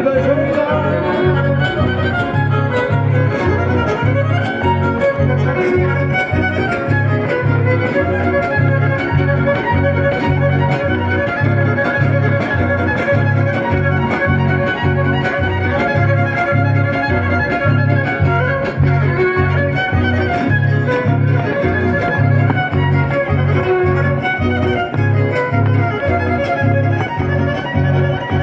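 Live band music played loud over a PA: an instrumental passage with a fiddle melody over guitars and a steady, even bass beat.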